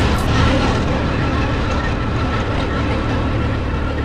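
Motorcycle on the move: a steady engine drone under the even rush of riding wind on the microphone.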